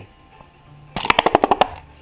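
Collapsible ribbed plastic shade of a telescopic camping lantern being pulled open, its folds popping out one after another in a quick run of about ten sharp clicks lasting under a second, starting about a second in.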